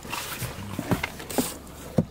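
Rustling and handling noise as passengers climb out of a car, with a few short knocks and one sharp knock near the end.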